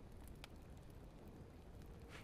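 Near silence, with one faint click about half a second in.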